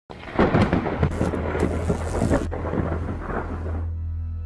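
A thunder-like rumble with crackling, starting abruptly; the high crackle cuts off about two and a half seconds in, leaving the rumble over a low steady hum.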